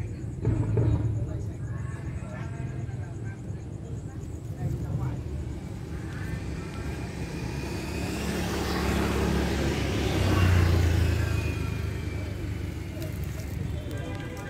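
A motor vehicle passing by: its noise builds over a few seconds, is loudest a little past the middle, then fades, with faint voices underneath.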